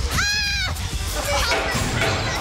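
A woman's short, high-pitched scream, about half a second long near the start, over a steady low rumble of strong wind from a studio fan blasting across a handheld microphone.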